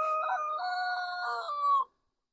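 A rooster crowing: one long, held crow that cuts off shortly before the end.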